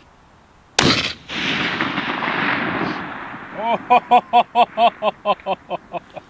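A single shot from a Sig Sauer Cross bolt-action rifle in 6.5 Creedmoor about a second in, its report rolling back through the canyon and fading over about two seconds. From a little past halfway, a person laughs in quick repeated bursts.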